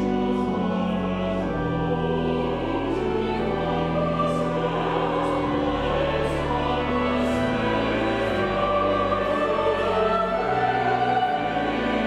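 Mixed church choir of men's and women's voices singing a sacred anthem, with sustained low notes, likely from a pipe organ, held beneath the voices.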